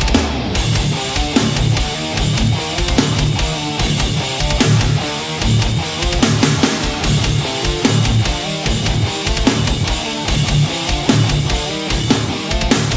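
Distorted electric guitar playing a low, heavy riff. It is an early-80s Vester MOD-800 semi-hollow tuned to drop D, played through a Boss Katana's clean channel with the built-in Boss MT-2 Metal Zone distortion and the mids scooped, for a bassy, mid-scooped metal tone.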